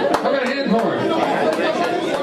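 Crowd chatter: many people talking over one another in a large, busy room, with a few short sharp clicks.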